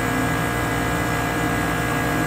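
Steady running hum of an Addison DHU rooftop HVAC unit, its condenser fans and motors running at an even pitch.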